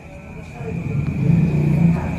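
A motor vehicle's engine, low-pitched and growing steadily louder from about half a second in as it comes closer.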